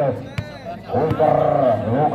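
Commentator's voice calling the volleyball play over crowd chatter, with a short pause and a single sharp knock about half a second in.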